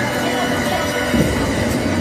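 A steady low rumbling drone with faint voices in the room, before the beat comes in.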